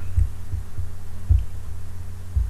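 Steady low electrical hum on the recording, with a few soft, dull low thumps, the strongest about a second and a half in.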